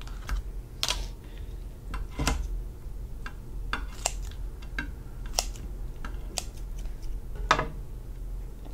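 Kitchen scissors snipping and cracking through a cooked lobster's shell: sharp, irregular clicks, roughly one every half second.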